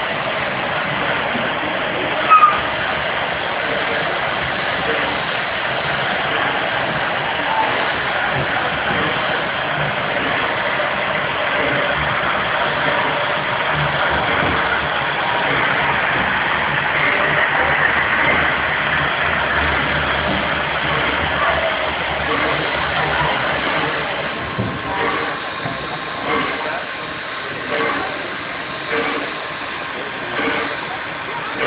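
A steady hiss from the air-powered turntable as it swings a steam locomotive around, with a sharp click about two seconds in. The hiss fades about four-fifths of the way through as the turntable comes into line.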